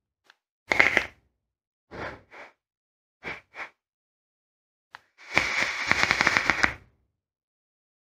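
A vape with a Zeus rebuildable tank atomizer, set to 55 watts, is fired and drawn on. There are a few short crackling puffs, then about five seconds in a long draw of about a second and a half, with the liquid sizzling and crackling on the hot coil and air rushing through the tank.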